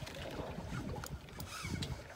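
Faint, irregular low rumble of wind on the microphone out on open water, with a couple of faint clicks about a second and a half in.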